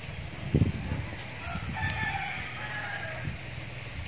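A rooster crowing once, a single call about two seconds long starting around a second and a half in. A brief low thump comes shortly before it.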